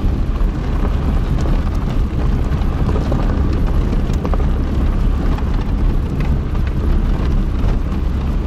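Car driving slowly on a rough dirt road: a steady low rumble of engine and tyres, with a few small scattered knocks.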